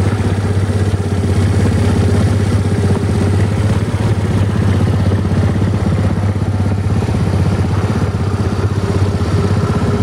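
Suzuki Let's 4 Palette scooter's small four-stroke single-cylinder engine idling steadily, with an even, rapid pulse.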